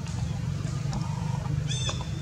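A macaque gives one short, high-pitched squeal near the end, over a steady low rumble.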